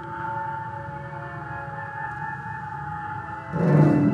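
Contemporary chamber music from violins and wind instruments: several long held tones overlapping. About three and a half seconds in, a sudden louder entry with strong low notes.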